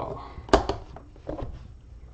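Handling noise from an encased trading card being taken out of an aluminium card briefcase: one sharp click about half a second in, followed by a few lighter clicks and soft rustling.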